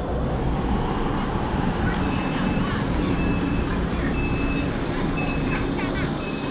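Street traffic with a vehicle engine running steadily. From about two seconds in, a short high electronic beep repeats about once every 0.7 seconds.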